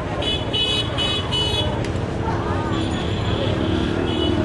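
Busy street crowd noise with voices, and a vehicle horn giving four quick high-pitched toots, then a longer toot about three seconds in.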